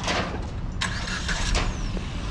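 Car engine running at idle, a steady low rumble, with a brief rush of louder noise about a second in.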